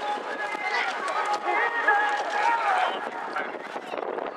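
People talking, several voices overlapping, over a steady background hiss.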